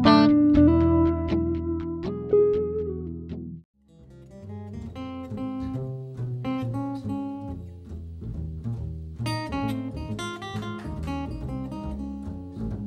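Plucked-string music that cuts off abruptly about three and a half seconds in. After a brief gap, a steel-string acoustic guitar and a plucked upright bass play together.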